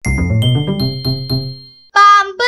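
Short, bright music jingle: a chime rings out at the start over a quick run of notes that fades away just before the end.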